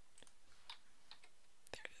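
Faint, scattered clicks of a computer mouse and keyboard, about six separate clicks over two seconds.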